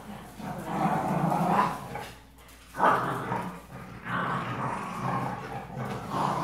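Dogs growling in play during a tug-of-war over a rope toy, in long rough stretches with a short lull about two seconds in and a sudden loud restart just before three seconds.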